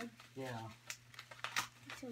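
A few sharp snips and clicks of cardboard packaging being cut open.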